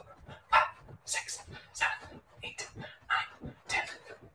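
A man huffing short breaths and grunts in rhythm while doing jumping jacks on a carpeted floor, about two a second, with faint thumps from his landings.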